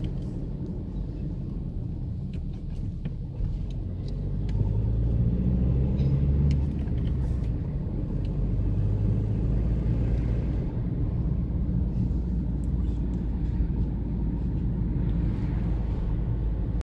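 Car cabin noise from the moving car: a steady low engine and road rumble. It grows louder for about two seconds around five seconds in.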